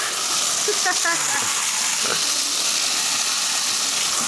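Fire burning with a steady, loud hiss that comes up at the start and holds.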